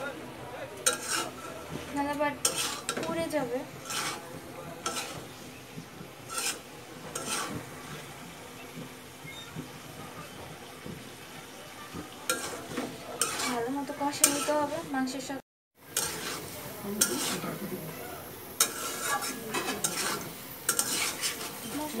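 A spatula stirring and scraping chicken and chana dal in a metal karahi, with repeated scrapes against the pan over a steady frying sizzle. The sound drops out briefly about two-thirds of the way through.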